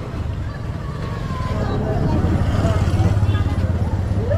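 A vehicle engine running steadily at low revs close by, a low even throb that grows a little louder about two seconds in, with faint voices in the background.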